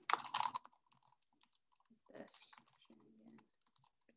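Typing on a computer keyboard: a quick flurry of key clicks at the start, then lighter, scattered keystrokes as a line of code is entered.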